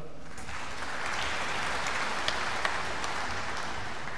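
Audience applauding in a large hall: a steady patter of clapping that starts just after the start and eases a little near the end.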